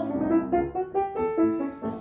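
Piano playing a short accompaniment passage on its own between sung lines: a run of single notes and chords, each starting cleanly and ringing on.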